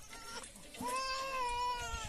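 A young infant crying: a short cry near the start, then one long, drawn-out wail from about a second in.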